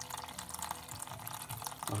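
Young wine running from a siphon tube into a plastic fermenting bucket, a steady trickle running down the bucket's inside wall.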